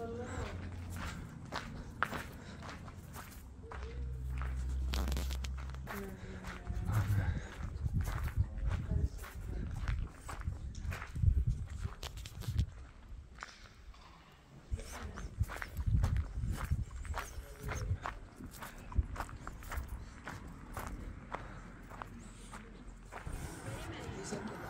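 Footsteps on a gravel path: a long run of uneven steps.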